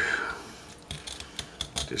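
Fillet knife cutting along a catfish's spine and ribs, giving a few small clicks as the blade passes over the bones in the second half.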